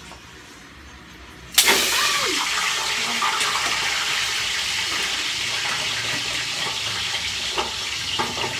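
Pork hock for crispy pata going into hot oil: a sudden burst of loud sizzling about a second and a half in, which keeps on as a dense, spattering deep-fry sizzle, easing slightly.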